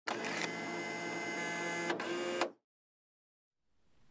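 Short sound effect for an animated logo intro: a steady sound of many held tones with a brief break about two seconds in, stopping abruptly after about two and a half seconds, then silence.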